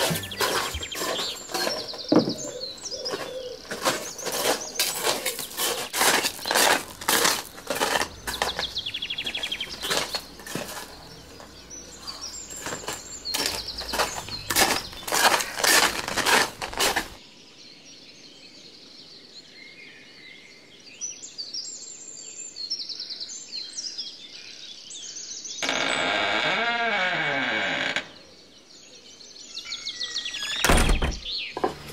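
Garden birds chirping throughout, over a dense run of sharp clicks and knocks in the first half. Near the end comes a loud creak of about two and a half seconds, an old wooden garden door swinging open on its hinges.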